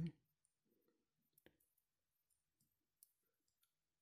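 Near silence: room tone with two faint, brief clicks about a second and a half in and again about three seconds in.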